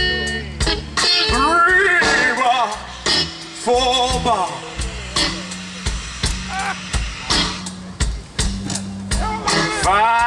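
Live band playing a twelve-bar blues: steady drum beat, bass and electric guitars, with a lead line of sliding, bending notes over it.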